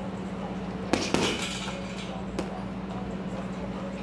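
Gloved punches landing on a hanging heavy bag: two quick hits about a second in, another a little later and one more at the end, each with a metallic clinking. The punches are thrown square, with no waist rotation, the way that leaves no power in them.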